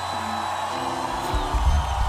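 Worship music with steady held chords; deep bass notes come in a little past halfway.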